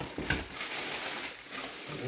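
Thin plastic packaging crinkling and rustling as hands lift bagged table parts out of a cardboard box.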